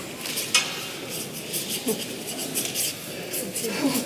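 Paintbrush worked quickly over watercolour paper: a rapid series of short, scratchy dabbing and scrubbing strokes.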